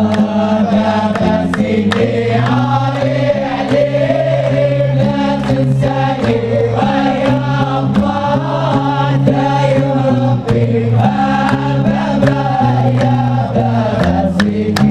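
Hamadsha Sufi brotherhood chant: a group of men singing a devotional chant together in long, low, sustained notes, with hand claps and drum strokes.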